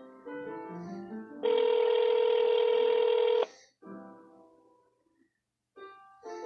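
Phone-line hold music with piano-like notes, cut into about a second and a half in by a steady two-second telephone ringing tone, the loudest sound. The ring is the call being transferred to an agent. The music then comes back, drops out briefly and resumes near the end.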